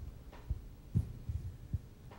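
A few soft, low thumps from a handheld microphone being handled, spread across the two seconds.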